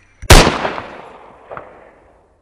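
A single pistol gunshot sound effect about a third of a second in, loud and sharp, with a long echoing decay. A fainter knock follows about a second later.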